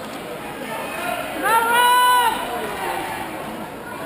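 A spectator's loud, drawn-out shout, held for most of a second about one and a half seconds in, cheering on a runner in the race. Crowd chatter runs underneath.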